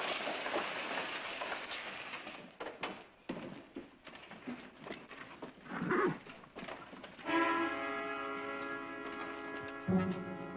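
Horse-drawn stagecoach rolling in, a dense clatter of wheels and hooves that thins out after a couple of seconds into scattered knocks and hoof steps. About seven seconds in, a held music chord comes in.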